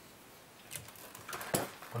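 Faint handling sounds of plastic food containers on a kitchen counter, with a single sharp click about one and a half seconds in.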